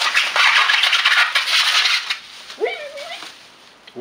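Plastic bubble wrap and foam packing crinkling and rustling as it is pulled off a part by hand. It is busiest in the first two seconds and tapers off after.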